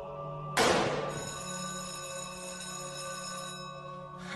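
A sharp smack of a wooden paddle on a boy's backside about half a second in, followed by an electric school bell ringing for about two and a half seconds, which ends the paddling.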